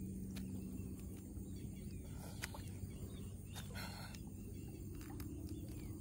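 Quiet handling of a wet fishing net by people standing in floodwater: a low steady rumble with faint scattered clicks and water movement, and a short burst of noise about four seconds in.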